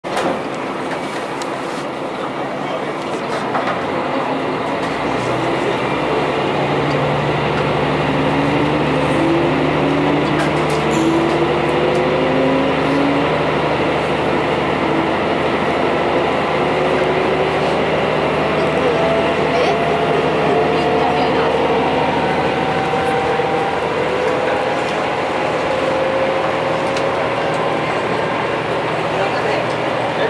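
Diesel railcar pulling away from a station, heard from inside the passenger car: the engine runs under load while a whine rises slowly and steadily in pitch as the train gains speed.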